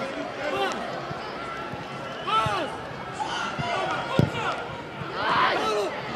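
Football match sounds from the pitch: scattered shouts and calls from players and the crowd, with a sharp ball kick about four seconds in.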